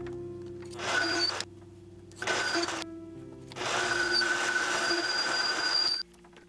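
Mini lathe cutting aluminium bar stock in three bursts of cutting noise with a steady high whine, the last and longest about two seconds. Background music plays throughout.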